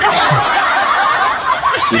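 A crowd of people laughing together, a laugh track answering a joke's punchline, loud and unbroken.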